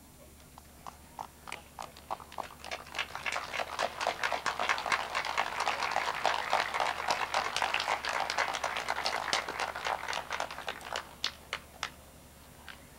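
Audience applauding: a few scattered claps that build over the first few seconds into steady applause, then thin out to a last few claps near the end.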